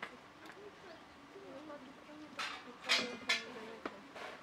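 Soft voices talking quietly, with three short, louder hissing sounds about two and a half to three and a half seconds in.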